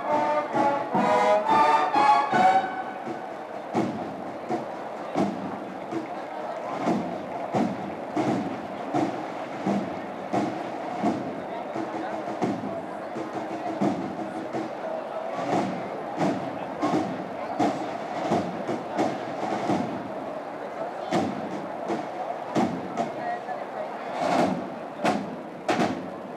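A brass procession band plays the last bars of a march and stops about two and a half seconds in. A crowd's murmur follows, with irregular short knocks and thuds.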